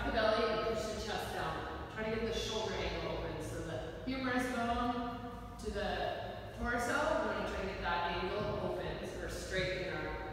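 Speech only: a voice giving spoken yoga instructions.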